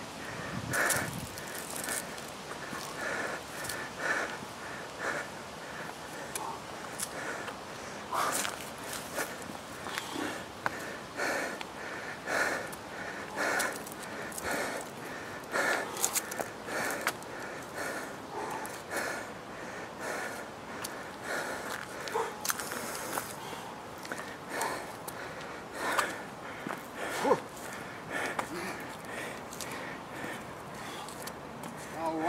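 Hard, rhythmic breathing of a man straining under a heavy sandbag during walking lunges, a forceful breath about once a second, with footsteps on paving. It is the laboured breathing of exertion late in a punishing set.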